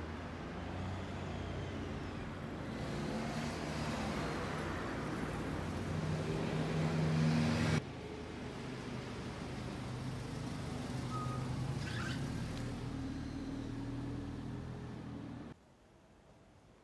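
Street traffic: motor vehicles running past with an engine hum that builds to its loudest about eight seconds in. The sound then cuts off sharply and goes on at a lower level until it stops just before the end.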